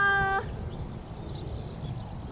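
A woman's high-pitched, held cry of delight as her bunker shot drops into the hole. It breaks off about half a second in, leaving quiet outdoor background noise.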